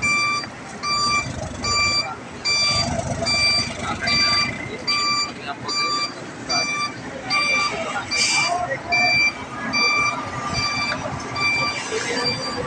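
A 12-wheeler truck's reversing alarm beeping steadily, about two beeps a second, as the truck backs up, over the rumble of the running truck. A short hiss cuts in about eight seconds in.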